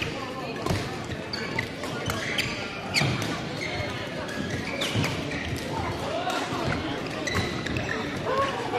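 Badminton rally in a large indoor hall: sharp racquet-on-shuttlecock hits about once a second, shoes squeaking on the court floor, and voices in the background.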